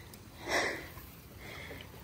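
A horse blowing one short breath out through its nostrils about half a second in, followed by a fainter breath near the end.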